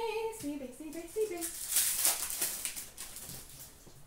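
A short murmur of voice, then, about a second and a half in, a burst of crinkling and rustling as a hockey card pack's wrapper and the cards inside are handled, dying away before the end.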